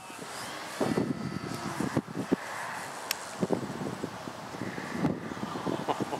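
Radio-controlled aerobatic plane (a 70-inch 3DHS Slick) flying at a distance, its motor a faint steady drone. Uneven gusts of wind buffet the microphone.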